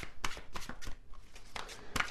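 Tarot cards being handled: a scatter of light, irregular clicks and rustles of card stock.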